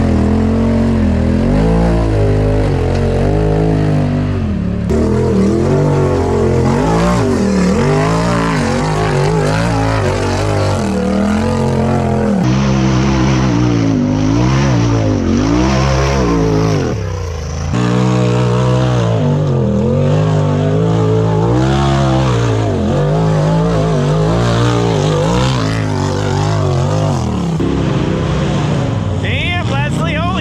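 Off-road side-by-side and rock buggy engines revving up and down over and over under load as they climb rocky ledges and dirt trails, in several short clips cut together.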